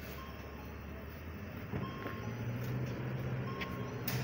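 City bus pulling away from a stop, its diesel engine note strengthening from a little under two seconds in. A short high beep repeats about every second and a half.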